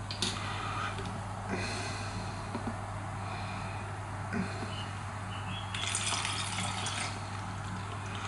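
Dark tanning liquid poured from a small bottle into a plastic lotion bottle: faint trickling, with a few light clicks and rattles as the plastic bottles and pump cap are handled.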